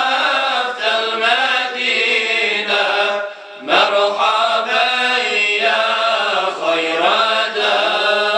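Male voices singing an unaccompanied ilahija, a Bosnian Islamic devotional hymn, in a long melismatic line with bending pitch. There is a brief pause for breath about three and a half seconds in.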